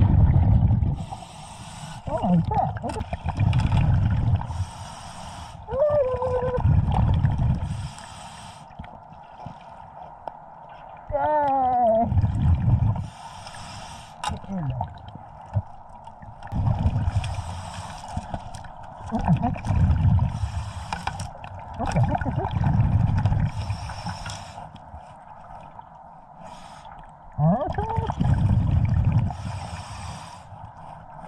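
Scuba diver breathing through a regulator underwater: a short hiss with each inhale, then a low rumbling gush of exhaled bubbles, about every four to five seconds.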